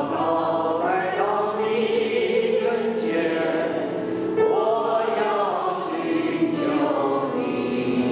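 A small mixed choir of men and women singing a worship song together in long, sustained phrases.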